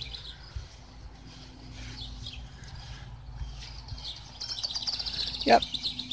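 Songbirds chirping, with a quick high trill of repeated notes that grows louder in the last second and a half.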